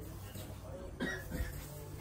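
A person's short cough about a second in, over a low steady background hum.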